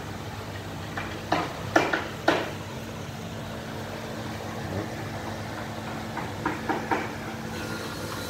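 Steady low hum of a motor or engine running in the background, with a few brief sharp sounds about one and two seconds in and a few weaker ones near the end.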